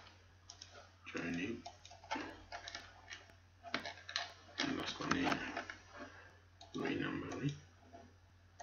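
Computer mouse clicking, a scattering of sharp short ticks, among low, indistinct speech, over a steady low hum.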